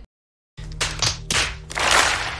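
Audience applauding in waves that build to their loudest near the end, after half a second of dead silence.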